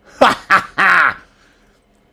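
A man laughing: three short bursts, the last one the longest, dying away about halfway through.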